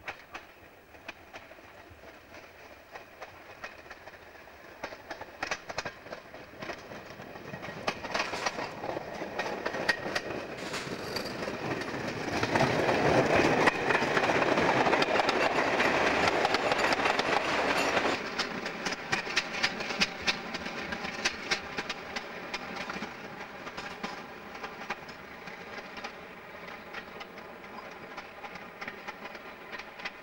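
British Rail first-generation diesel multiple unit passing close by through a junction, its wheels clicking over rail joints and pointwork. The sound builds to its loudest in the middle and then drops away suddenly, leaving a steady diesel engine hum with continuing wheel clicks.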